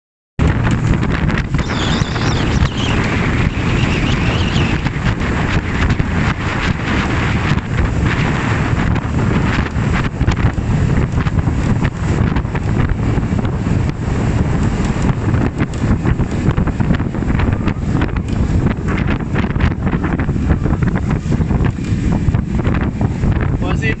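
Strong wind buffeting the microphone aboard a fast-moving boat, a steady low rumble with rushing water, broken by constant crackling where jacket fabric flaps against the mic.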